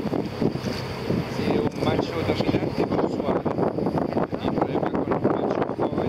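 Boat engine running steadily, with wind buffeting the microphone.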